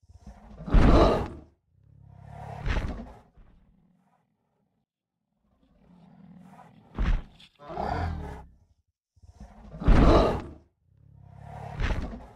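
Sound effect of the Google 3D augmented-reality Parasaurolophus: a series of about six roaring dinosaur calls, each a second or two long, with silent gaps between. The loudest calls come about a second in and about ten seconds in.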